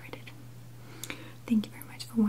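Soft whispered voice with a few small clicks, and a short voiced sound about a second and a half in, over a steady low hum.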